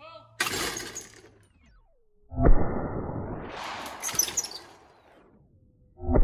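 A manual spring-arm clay thrower releasing with a sharp snap as it launches a clay. About two seconds later comes a loud 12-gauge shotgun blast with a long ringing tail, and another sharp bang right at the end.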